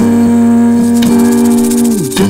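Music: one long held note that drops away at the end, over a steady run of light, quick percussion ticks.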